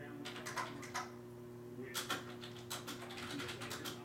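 Typing on a computer keyboard: a short run of key clicks near the start, then a longer, quicker run from about two seconds in, over a steady low electrical hum.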